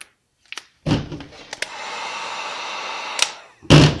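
Wagner heat gun blowing for about two seconds, a steady airy hiss with a faint whine. There is a thump about a second in and a louder thump near the end, from handling the tool and trim piece.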